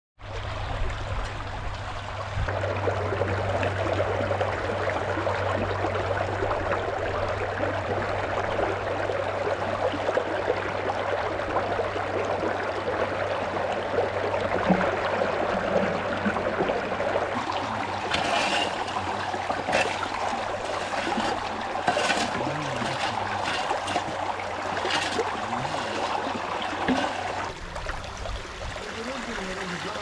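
Creek water running steadily through an aluminium gold-prospecting sluice box in a shallow stream. Past the middle come several short rattles, as gravel is scooped and poured onto the sluice.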